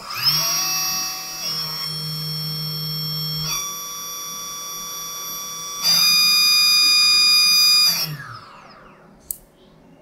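Small brushless (BLDC) model-aircraft motor spinning up under its repaired three-phase controller, giving an electronic whine of several steady tones that grows louder in two steps and then winds down and fades about eight seconds in. The start is a little jerky, a stutter that comes at low current.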